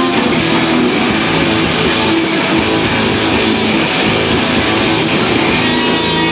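Noise-rock band playing live: electric guitars, bass guitar and drum kit, loud and steady with held guitar chords.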